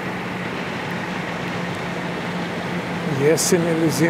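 Steady, even outdoor background noise with a faint low hum, and a man's voice speaking briefly near the end.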